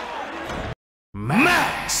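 Arena background noise that cuts off dead at an edit, a short gap of silence, then a drawn-out voice announcing "Max Muay Thai" with a brief whoosh: the broadcast's ident bumper.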